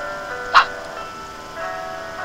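Background music: a simple melody of held, chime-like electronic notes. About half a second in, a brief sharp noise cuts across it, a transition sound effect.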